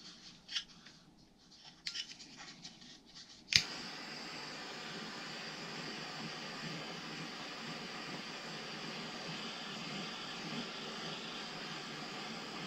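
Light clicks and rustles of a small wooden piece being handled, then about three and a half seconds in a sharp click as a handheld gas torch is lit, followed by the steady hiss of its burning flame.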